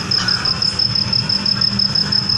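A steady low rumble with a thin, high-pitched whine over it: the background hum of a large outdoor gathering.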